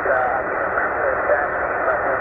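A ham radio operator's voice in lower sideband, received on the 40-metre band by a Tecsun PL-990x shortwave receiver and heard through its speaker. The speech is narrow and tinny, cut off above about 2.7 kHz, over a steady hiss of band noise.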